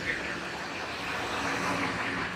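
A motor vehicle passing, a steady engine and road noise that swells slightly in the second half.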